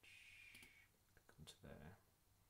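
Faint computer mouse clicks, a few in quick succession a little past halfway, with a brief low voice sound just after them.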